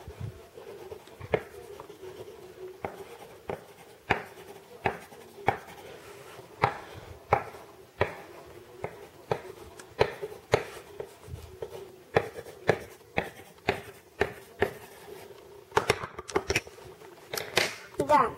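Coloured pencil tapping and dabbing short strokes onto paper on a hard tabletop, a sharp click roughly every half second to second, as dots are added to a drawing.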